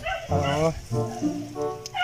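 People's voices talking in short utterances over steady background music.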